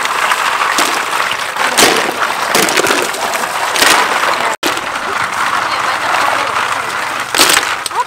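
Water from a hose splashing into a metal basin full of live snails while hands rub and stir them, the shells clacking and knocking against each other in several sharp bursts. The sound cuts out abruptly for an instant about halfway through.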